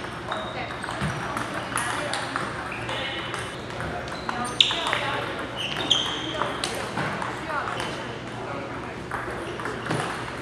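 Table tennis balls clicking off bats and table tops in an irregular rally rhythm, from the match in play and neighbouring tables, some hits with a short high ping. The hall's reverberation carries under a steady murmur of voices.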